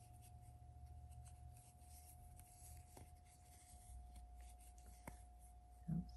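Near silence: faint soft rubbing of yarn and a crochet hook being worked, over a steady low hum, with a couple of faint ticks.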